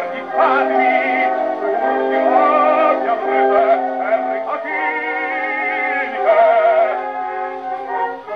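An operatic baritone sings sustained notes with a wide vibrato over orchestral accompaniment. It is an early acoustic recording played from a shellac 78 record on an acoustic gramophone, with a narrow, boxy sound and no high treble.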